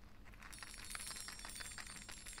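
Pregnancy bola pendant gently shaken, the small bell inside its silver filigree cage tinkling faintly with a high, thin jingle that starts about half a second in.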